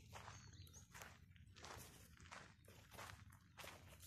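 Faint footsteps crunching on a bark-mulch path, about two steps a second.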